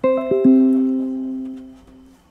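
A short piano-like jingle: about four notes struck in quick succession, each lower than the last, that ring together and fade away over about two seconds.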